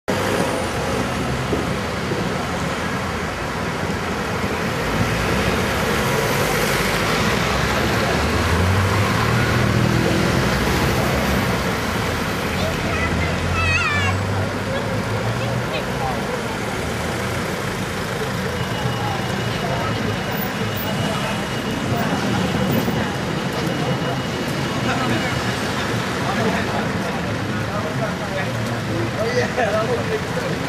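Road traffic driving round a roundabout: cars and a van passing, with a heavier engine hum in the middle. People's voices chatter faintly underneath.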